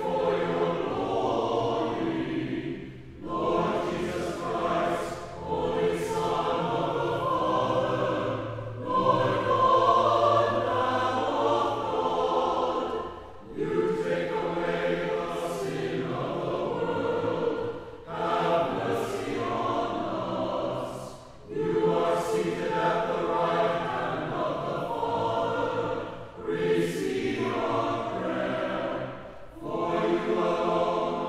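Mixed church choir singing sacred music in the Orthodox-influenced style, in sustained phrases of about four to five seconds separated by brief breaths.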